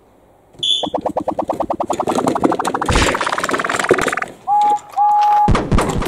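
A fast pulsing electronic tone climbing steadily in pitch for about three and a half seconds, followed by two short beeps and a deep falling thud near the end.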